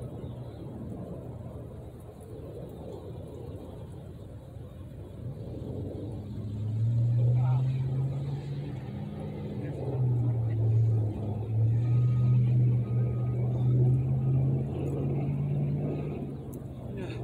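A motor vehicle's engine running nearby: a low, steady hum that grows louder about six and a half seconds in and holds, wavering slightly.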